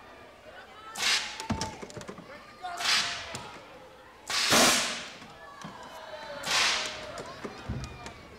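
Compressed-air tennis ball cannons firing four shots about two seconds apart, each a sudden sharp blast; the loudest, about halfway through, carries a low thud.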